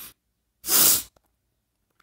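A man sneezes once: a single loud burst of breath noise about half a second long, a little over half a second in.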